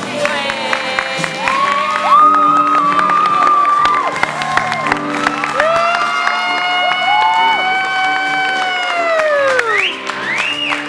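Theatre audience cheering and yelling in long held shouts that swell, hold and fall away together, with a long falling cry near the end. Music plays underneath.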